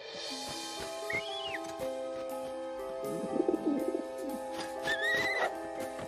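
Soft background score of long held chords, with two short pitched calls that rise and fall, about a second in and again near the end, and a brief flurry of quicker notes around the middle.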